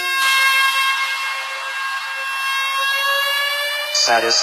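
Build-up in an electronic dance mix: the bass and drums drop out, and a sustained synth tone with a hiss above it slowly rises in pitch, siren-like. The beat comes back in right at the end.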